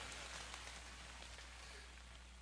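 Faint hiss of heavy rain from a played video of a hurricane downpour, heard through a lecture hall's loudspeakers and fading out, with a low steady hum beneath.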